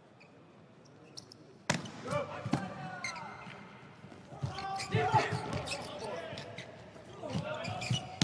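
Volleyball rally: a sharp hit of the serve a little under two seconds in, then further ball strikes mixed with players' shouts and calls.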